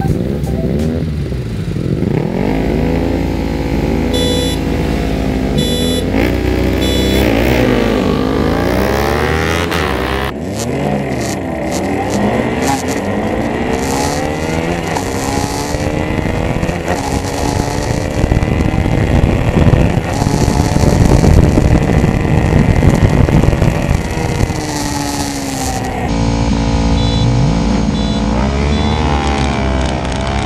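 A pack of 300cc sport motorcycles accelerating hard from a drag-race start, engines revving up through the gears, the pitch climbing and dropping again at each shift. Later the bikes run close alongside and pass by at speed, revving and shifting.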